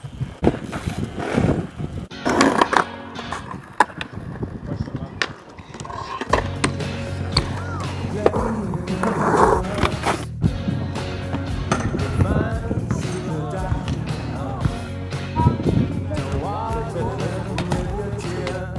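Skatepark riding sounds: wheels rolling and sharp knocks and clacks on concrete ramps. About six seconds in, a music track comes in and runs under them.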